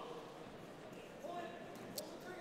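Faint murmur of voices from spectators around an MMA cage, over low hall ambience, with one sharp click near the end.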